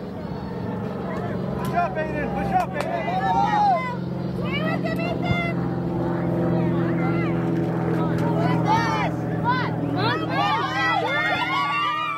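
Distant shouts and calls of players and spectators across an open soccer field, over a steady low engine hum that grows a little louder from about four seconds in.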